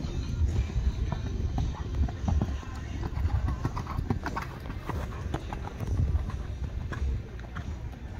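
A horse's hoofbeats on sand arena footing as it canters: dull, repeated thuds.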